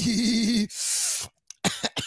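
A man's voice draws out a word with a wavering pitch, then he coughs: one long rasping cough followed by several short ones near the end.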